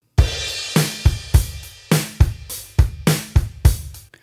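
A drum-kit groove played back from a mix: kick and snare hits in a steady rhythm, opening with a cymbal crash, stopping just before the end. It is the dry drum track before any vinyl-emulation effect is applied.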